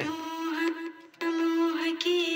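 A young woman singing solo, holding a long steady note, then after a brief break about a second in, a second long held note.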